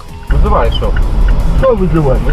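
A man shouting angrily in a heated roadside argument, recorded by a dashcam over a steady low rumble, with background music underneath. The sound jumps up suddenly about a third of a second in.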